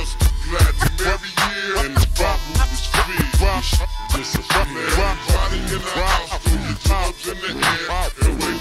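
Slowed-down, chopped-and-screwed Texas hip hop track: a heavy bass line under rapped vocals.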